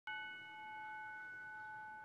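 A single bell-like chime struck at the very start, ringing on as several steady tones that slowly fade.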